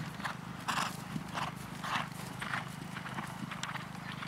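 A horse's hooves beating on turf at a canter, about two strides a second, the beats growing weaker toward the end.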